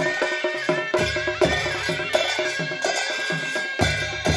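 Nepali panche baja band playing: a sliding reed-pipe melody over steady strokes of two-headed barrel drums and clashing hand cymbals.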